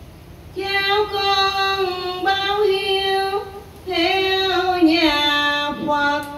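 A woman's voice chanting Buddhist scripture verse in a slow, sung style. She holds long, drawn-out notes in three phrases, coming in just over half a second in.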